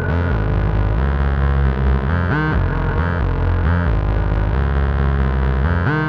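Behringer K2 analogue synthesizer playing a run of low, changing notes through a Strymon Volante magnetic echo pedal.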